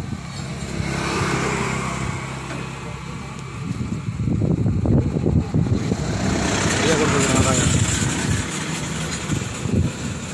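A vehicle engine running steadily at idle under men's voices, with metallic clanks of tools being worked on a truck wheel around the middle.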